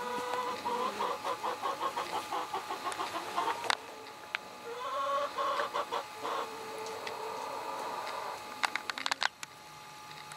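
A chicken clucking in two runs of quick, even clucks, the first about three seconds long. A few sharp clicks near the end.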